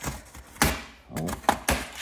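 Large cardboard shipping box being shoved and set down: a dull thunk about half a second in, then a couple of lighter knocks near the end.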